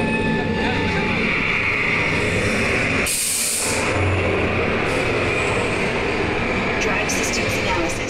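EPCOT Test Track ride vehicle rolling along its track with a steady rumble and road noise. About three seconds in, a short sharp hiss cuts in.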